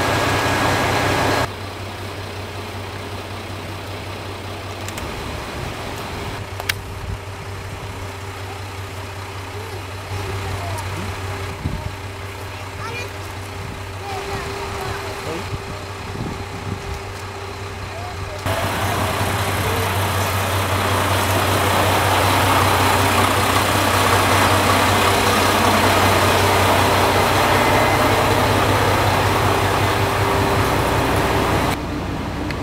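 Diesel railcar engine idling steadily at the platform, a continuous low hum with a steady higher drone. The sound drops abruptly about a second and a half in and gets louder and noisier again around eighteen seconds.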